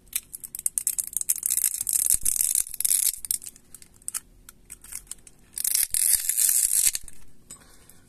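Battery adhesive strip of a Xiaomi Redmi 9T being peeled and pulled out from under the battery: a crackling, tearing noise in two long stretches, the first right at the start and the second past the middle, with small clicks between. It is the sound of the battery being freed from its glue.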